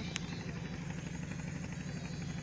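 Small engine of a wooden river boat running steadily with an even low throb.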